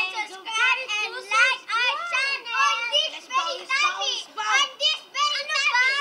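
Young children talking and chattering in high voices, with no clear words.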